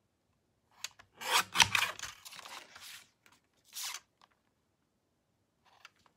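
Sliding-blade paper trimmer cutting a sheet of patterned paper: a short click, then about a second of rasping as the blade slides down the track through the paper, and a shorter rasp about four seconds in.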